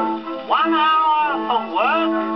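Acoustic-era 78 rpm record of a music-hall novelty song playing on a horn gramophone. A long note slides up and is held for about a second, and another upward slide follows near the end, over a steady accompaniment tone.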